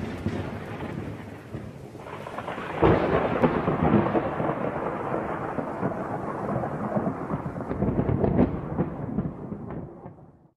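Thunder rolling in a long rumble, with a fresh sharp crack about three seconds in, dying away near the end.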